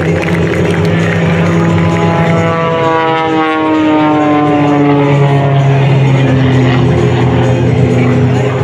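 Extra 330SC aerobatic plane's engine and propeller droning at high power, the pitch dropping steadily as it passes by between about three and six seconds in. Music plays underneath.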